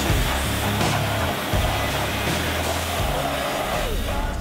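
Pressure washer spray hitting a truck's tyre and wheel, a steady hiss, with background music playing over it.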